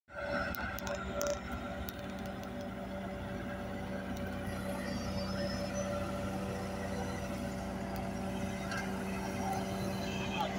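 Diesel engines of a smooth-drum road roller and a motor grader running steadily, a constant low drone with a held hum tone. A few light clicks sound in the first second or so.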